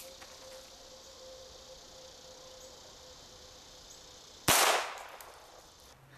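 A single .22 LR pistol shot from a Walther P22, about four and a half seconds in: one sharp crack with a short ringing tail.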